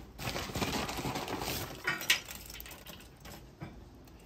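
Handfuls of dry wood chips dropped onto charcoal in a grill, a light scattered clattering and clinking, loudest about two seconds in and fading after.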